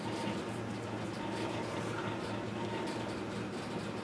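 Steady low background hum with a faint thin high tone, unchanging throughout, with a few faint small ticks.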